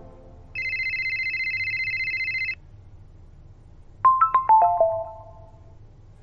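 Mobile phone ringtone: a steady high electronic beep of about two seconds, then about four seconds in a quick run of six short ringing notes that fall in pitch.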